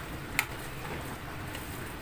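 A metal spoon stirring frothing milk that is coming to the boil in a stainless steel pot, over a faint steady hiss, with one light click of the spoon against the pot about half a second in.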